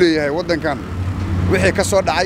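A man speaking, pausing for about half a second near the middle, over a steady low rumble of street traffic.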